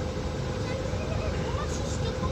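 Steady urban outdoor background: a low rumble of traffic with a thin steady hum and faint, distant voices.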